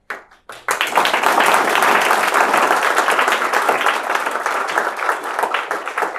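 Audience applauding: a few scattered claps, then full applause from under a second in.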